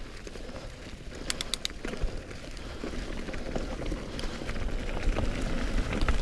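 Mountain bike rolling along a dirt trail covered in dry fallen leaves: tyres crunching and rustling through the leaves with the bike's light rattle, growing louder toward the end. A quick run of four short high chirps about a second and a half in.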